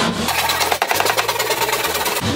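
A small saw cutting through a plasterboard sheet along a timber stud to open a doorway, making a fast, steady rattling buzz.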